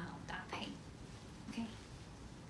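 A woman's voice finishing a word softly and breathily, then a short low vocal sound a second later over quiet room tone.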